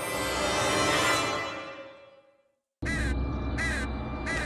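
A musical flourish swells and fades away over about two and a half seconds. After a brief silence, a low rumble starts suddenly and a crow caws twice.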